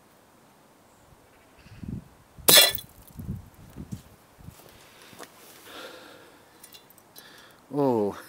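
An air-rifle pellet strikes a toy double-decker bus model with one sharp crack about two and a half seconds in. A patter of smaller knocks and rattles follows over the next second or so as the bus's glazing and body parts break off and fall onto the stone step.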